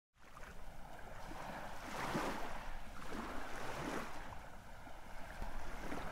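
Ocean surf washing in on a beach, a steady hiss that swells about two seconds in and again near four seconds.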